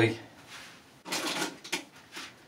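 A short rustling clatter about a second in, lasting about half a second, as a plastic styling-product container is handled at a rubbish bin, with a smaller knock near the end.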